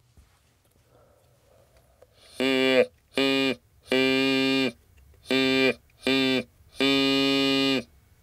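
Whistle-type artificial larynx sounding through a vocal-tract model with a flexible tongue, its tongue pushed against the palate to shape the vowel /i/ ("ee"). Six vowel sounds on one unchanging pitch, some short and some longer, with gaps between them.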